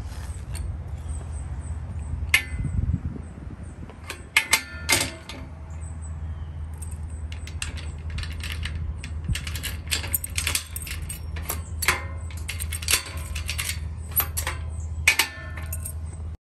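Metal clicks and clanks of a Locinox gate lock being worked by hand: the lever handle turning, the latch snapping and the metal gate rattling. The sharp strikes start about two seconds in and come thickest in the second half, over a steady low rumble.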